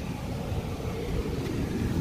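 Wind rumbling on the microphone: a steady low noise with no distinct events.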